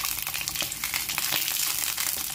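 Large green bajji chilies frying in a little oil in a nonstick pan: a steady sizzle of fast, dense crackling.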